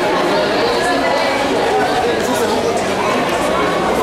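Crowd chatter: many people talking at once in a large hall, a steady babble of overlapping voices.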